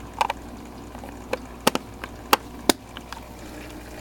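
Hard plastic parts of an aquarium protein skimmer being handled: about half a dozen sharp clicks and knocks, spread out, as the emptied collection cup and its lid are put back together.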